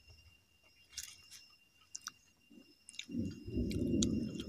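Close-miked mouth sounds of a person chewing a handful of rice and leafy greens, with a few sharp wet clicks and smacks. About three seconds in, a loud low rumble sets in and stays. A faint steady high tone runs underneath.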